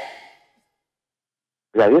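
The tail of a broad, noisy din fades out, then a gap of dead silence lasting more than a second, then a man's voice starts loudly near the end with short, repeated phrases.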